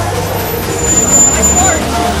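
A motor vehicle passing in street traffic, with a thin high-pitched squeal lasting about a second from just under a second in, over crowd chatter and music with a steady low bass.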